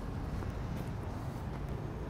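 Steady low rumble of road traffic, with no distinct event standing out.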